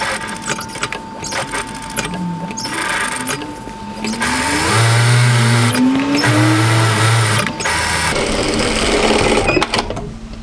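Industrial single-needle lockstitch sewing machine top-stitching a fabric strap, running in stop-start stretches with two longer runs a little past halfway.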